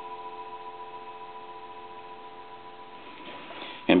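Telephone dial tone, a steady hum of several tones, coming through the receiver of a Monarch wooden wall crank telephone connected to a telephone line analyzer; it stops about three seconds in.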